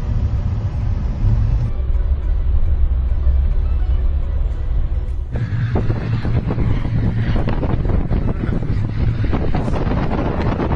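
Steady low rumble of a car driving, heard from inside the cabin. About five seconds in it cuts to wind buffeting the microphone, with many short crackles and knocks over a low rumble.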